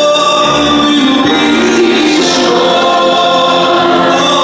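Mixed choir of male and female voices singing held chords.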